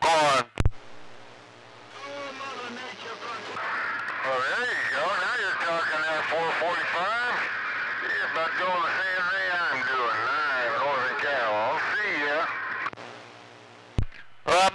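A distant station's voice coming in over a CB radio's speaker, thin and band-limited under static and hum. A click about half a second in marks the end of the local transmission.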